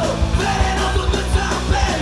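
Punk rock band playing live and loud: distorted electric guitar and bass over fast, dense drumming, with a shouted lead vocal.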